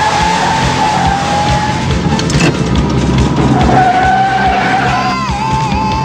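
A car's tyres squealing at length as it speeds and swerves, with the engine running underneath; the squeal wavers near the end. Film soundtrack music plays along with it.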